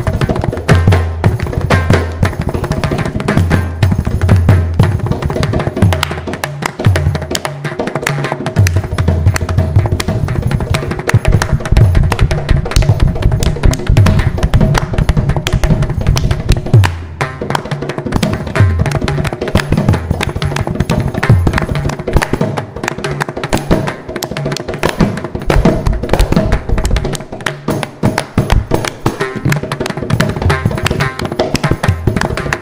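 Mridangam and kanjira playing a Carnatic percussion solo (tani avartanam). There are rapid dense strokes and repeated deep bass strokes from the mridangam, over a steady drone tone.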